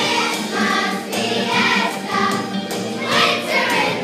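A choir of children singing together in short sung phrases.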